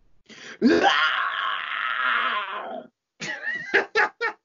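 A man's voice performing a long, rough demon scream lasting about two and a half seconds, rising in pitch at the start. Laughter follows near the end.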